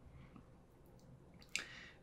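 Near silence with faint room tone, and a short, soft intake of breath about three-quarters of the way through.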